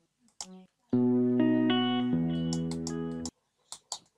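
Sustained notes played back from the FL Studio piano roll on an orchestral string patch. A brief single note sounds first; held notes follow from about a second in, move to a lower chord about two seconds in, and stop abruptly after about three seconds.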